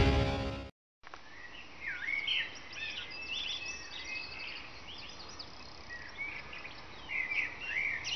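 Music dies away at the very start, a brief moment of dead silence, then birds chirping over a faint steady hiss. The chirps are short, quick up-and-down notes that come in clusters, busiest soon after the silence and again near the end.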